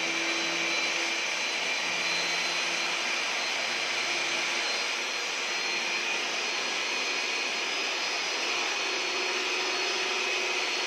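Water-fed diamond core drill on a rig stand, running steadily with a whine over a grinding rush as its bit bores into a masonry wall.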